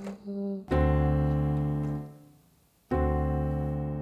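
Two piano chords played on a keyboard. Each is struck and held for over a second before being released. The first comes just under a second in and the second about three seconds in, the second being a D7 chord.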